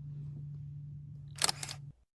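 Camera shutter click of a photo being taken, a short sharp sound about one and a half seconds in, over a steady low hum. The sound cuts off abruptly just before the end.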